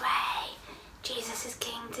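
A woman saying a short chant very quietly, half-whispered at first and then in a soft voice.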